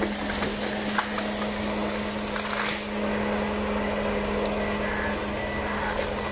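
Ponsse Ergo forestry harvester running steadily with a constant engine hum, with a few short cracks near the start and a brief rushing noise about two and a half seconds in.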